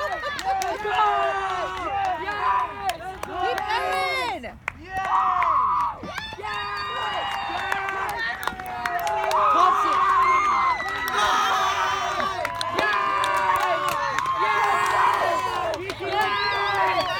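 Baseball spectators and teammates shouting and cheering, several voices calling out at once, cheering on a base hit as the batter runs the bases; the yelling gets louder in the second half.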